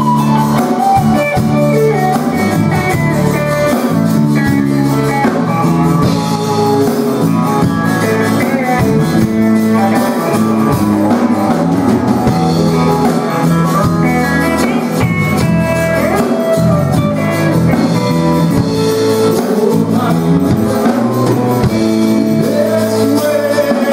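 Live gospel band playing an instrumental break, with a solid-body electric guitar taking the lead over a moving bass line.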